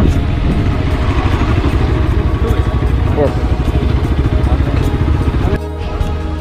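Motorcycle engine running on the move, with wind on the microphone. The sound changes abruptly near the end to music.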